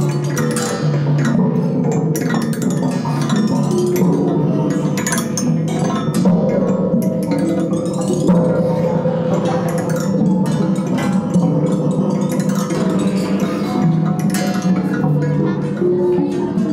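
Baschet sound structures played by a group at once: metal blades and steel rods struck with sticks, ringing through large cone-shaped resonators. Many irregular, overlapping strikes over sustained low ringing tones.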